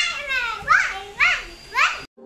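Young girls calling out short, high-pitched goodbyes: about four quick calls, each rising and then falling in pitch.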